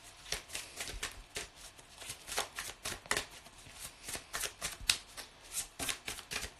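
A tarot deck being shuffled overhand, the cards ticking and slapping against each other in an irregular run of a few clicks a second.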